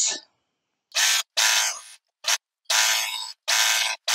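Jaguar overlocker (serger) running in five short stop-start bursts, starting about a second in, as a seam is sewn.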